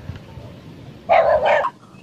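A dog barking, two quick barks about a second in.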